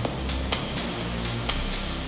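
Melodic techno loop: a long, sustained, dirty Moog modular bass line over steady hi-hats, with the kick drum dropped out.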